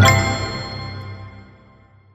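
A single bell-like ding with a low note beneath, struck once and left to ring out, fading away over about two seconds: the closing hit of a logo jingle.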